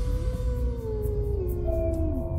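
Outro music: a deep, steady droning rumble under slow tones that glide downward in pitch.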